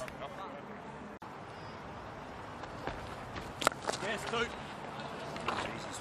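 Cricket ground ambience: a low, steady crowd murmur with faint distant voices. A single sharp crack of bat on ball comes a little past halfway through, as a ball is punched away.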